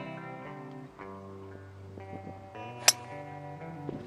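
Acoustic guitar music plays throughout. About three seconds in, a single sharp click cuts through it as the golf club strikes the ball off the tee.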